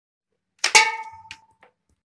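A sharp metallic clack with a brief ringing tone, then two lighter clicks, from the mechanism of a cardboard toy Uzi being handled.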